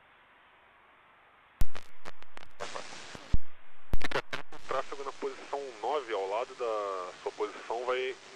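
Air traffic control radio: faint hiss, then sharp clicks and a short burst of static as a transmission opens, followed from about five seconds in by a voice talking over the radio.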